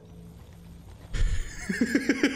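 A man laughing hard in a fast run of 'ha' pulses, breaking out suddenly just past a second in after a quiet moment.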